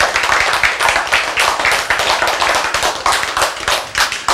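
Audience clapping: a dense run of quick, uneven claps.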